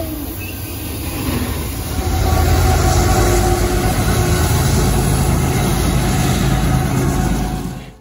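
Freight train passing close by: a steady heavy rumble of wheels on the rails that grows louder about two seconds in and fades out just before the end.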